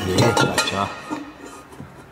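Light metallic clinks and knocks of a freshly welded steel exhaust downpipe being handled into place against the car's underside, mostly in the first second, then quieter.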